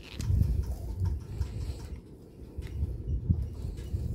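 Low rumbling handling noise with a few faint clicks as a small glass gel polish bottle is handled and its brush cap unscrewed.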